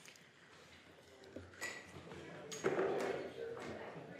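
Indistinct, off-microphone voices in a large hall, a little louder in the second half, with a few sharp clicks and knocks.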